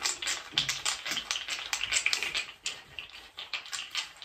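Wooden bead roller massage tool used for wood therapy, its wooden beads clicking and clacking as it is rolled over oiled skin: a steady run of quick, irregular clicks, several a second.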